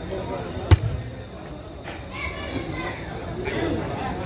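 A football struck by a footvolley player: one sharp thud about a second in, the loudest sound, and a fainter hit near the middle, over the talk and calls of spectators.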